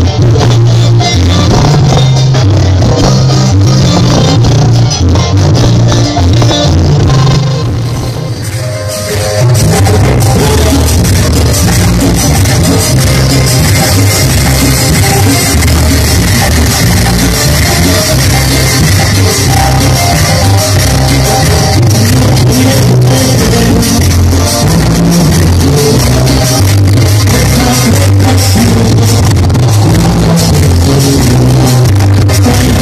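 Live cumbia band playing loud, with a heavy bass beat, percussion and keyboards, and some singing. About eight seconds in the music thins out and drops briefly, then the full band comes back.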